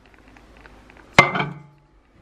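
A stoneware bowl set down on a microwave's glass turntable: one sharp clink about a second in, ringing briefly.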